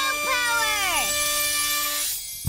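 Cartoon power-up music sting: a held synthesizer note with a falling pitch glide over it in the first second, then a bright shimmer.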